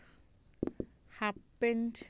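Marker pen writing on a whiteboard: a few short, sharp strokes, with a woman's voice saying a single word in the second half.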